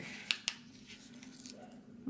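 Two quick snips of small scissors cutting a strip of washi tape down to size, a fraction of a second apart.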